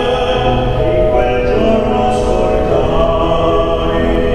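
Male operatic voice singing a lyric piece, accompanied by a grand piano.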